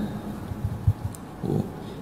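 A pause in a man's speech through a handheld microphone, with a few low thumps and a short low voiced sound close to the mic.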